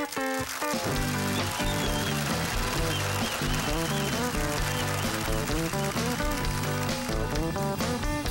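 Live rock band starting a song: a few short, sharp guitar chords, then, under a second in, the full band comes in with electric guitars, bass and drums playing an instrumental intro at a steady beat.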